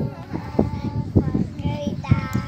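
A group of children singing softly together between louder sung lines, with several short knocks.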